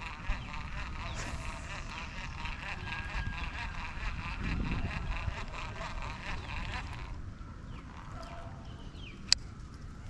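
A continuous chorus of birds calling, rapid overlapping calls that drop away about seven seconds in, over a low rumble; a single sharp click near the end.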